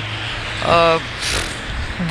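Low rumble of city traffic with a steady hum beneath it, and one short spoken syllable about two-thirds of a second in, followed by a brief hiss.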